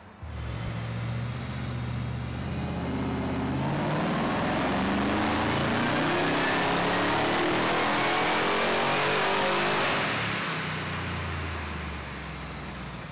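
Modified HSV GTS's supercharged 6.2-litre LSA V8, with a big camshaft and an aftermarket exhaust, making a dyno pull. It runs steadily for about three seconds, then the revs climb for about six seconds under full throttle with the supercharger's whine rising alongside. About ten seconds in the throttle closes and the revs fall back.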